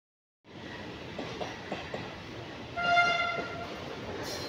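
A train running past with wheels clicking on the rails, and about three seconds in a short blast of a train horn, a single steady note lasting about half a second.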